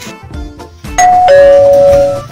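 Electronic two-tone doorbell chime, ringing loudly about a second in: a short higher note falling to a longer, lower held note, over background music.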